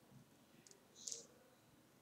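Two faint computer mouse clicks, the second, about a second in, a little louder, over near silence.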